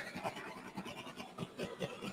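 Faint, irregular light scratching and ticking from hand handling over a wet acrylic-pour canvas.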